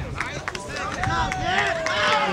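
Baseball spectators' and players' voices: many people talking and calling out at once, with one long, slowly falling shout through the second half.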